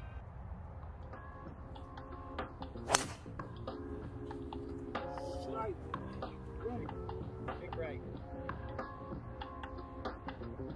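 A golf driver striking a ball off the tee: one sharp crack about three seconds in, the loudest sound, over steady background music.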